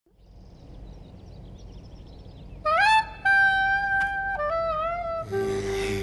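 Faint outdoor ambience with scattered high chirps. A few seconds in, a horn-like wind instrument plays a short phrase of three held notes, each sliding up into pitch, the last one wavering. Near the end a steady low tone comes in.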